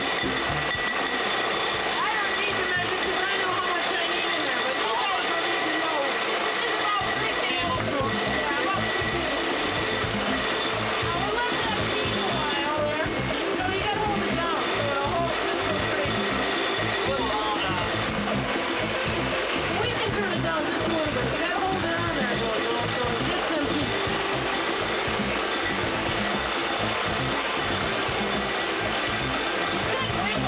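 Electric stand mixer running steadily as it beats egg whites into meringue, with a high whine that partly drops away a little past halfway. A pop song with singing plays over it.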